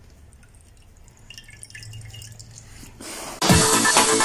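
Faint wet dripping and squelching as a sock-covered bottle is worked in a tray of soap solution. Then, about three and a half seconds in, loud electronic dance music with a heavy beat starts suddenly.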